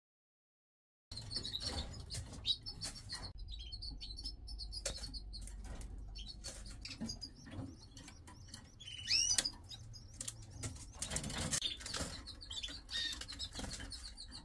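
Red factor canaries in their cages: scattered high chirps and calls, with a few quick sweeping notes past the middle, among wing flutters and short clicks. The sound starts about a second in.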